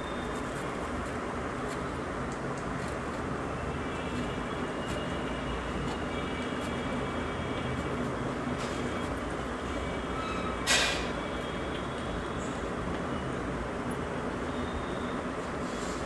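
Steady background noise with a faint hiss, even throughout, with one short sharp sound about eleven seconds in.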